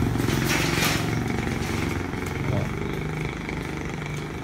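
A motor vehicle engine running nearby with a low, steady note that slowly fades away.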